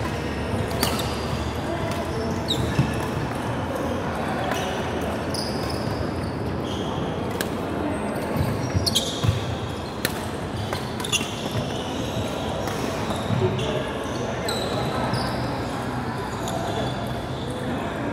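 Badminton rally in a large indoor hall: sharp racket strikes on the shuttlecock and short high squeaks of court shoes on the wooden floor, over a background murmur of voices.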